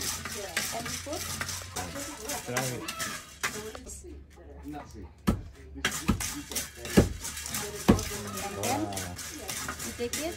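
Roasting coffee beans being stirred in a pan, a dense run of small rattling clicks. Then a long wooden pestle pounds roasted coffee beans in a stone mortar: four heavy thuds a little under a second apart, the last two the loudest.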